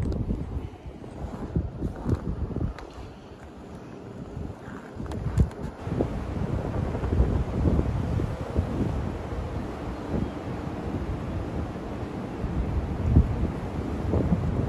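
Wind buffeting the phone's microphone in gusts over the rushing water of tidal river rapids running high. It is quieter at first and grows stronger about halfway in, with a few handling knocks near the start.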